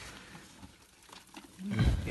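Quiet, faint scuffling, then near the end a loud, low-pitched man's voice sound starts suddenly.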